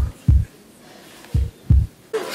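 Heartbeat sound effect played over the theatre's sound system: two deep double thumps (lub-dub), the second pair about a second and a half after the first. It marks the laid-out 'corpse' coming back to life.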